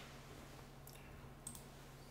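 Two faint computer mouse clicks, about a second in and again just over half a second later, over near-silent room tone with a low steady hum.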